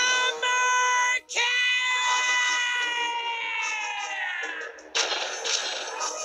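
Cartoon character's loud, high-pitched yell: a short burst, a brief break, then a long cry that slowly falls in pitch over about three seconds. A rush of noise comes in about five seconds in.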